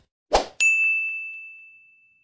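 A brief swish, then a bright electronic ding that rings on one high note and fades away over about a second and a half: a video sound effect accompanying a 'like' button animation.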